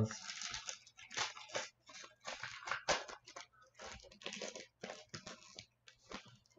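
Foil wrapper of a hockey trading-card pack crinkling and tearing as it is opened by hand, in a run of short, irregular rustles.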